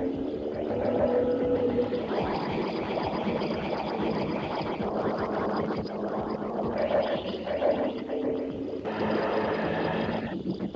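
Experimental tape-collage noise music: a dense, churning mass of noise, with a few brief wavering tones near the start and again about seven seconds in.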